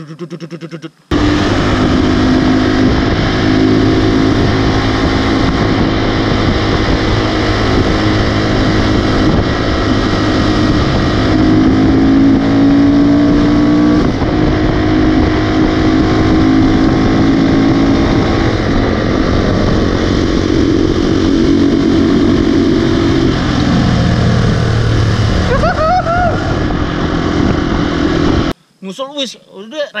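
Motorcycle engine running hard at high revs with heavy wind rush, heard from a camera mounted on the moving bike. The revs ease off and then climb again a few seconds before the sound cuts off.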